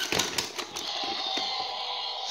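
Rapid plastic clicking from a toy T. rex figure's jaw action feature as it is worked open and shut, lasting under a second, then a faint steady hum.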